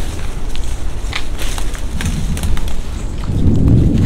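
Crackling of twigs and rustling of leaves, with footsteps on the forest floor, as people push through dense undergrowth. There are many short snaps throughout, over a steady low rumble that grows louder near the end.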